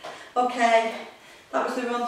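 A woman's voice speaking in two short bursts, one shortly after the start and one near the end.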